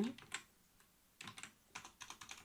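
Faint typing on a computer keyboard: short clusters of key clicks about a second in and again near the end.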